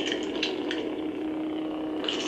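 A steady low hum with a faint hiss, and two faint clicks under a second in.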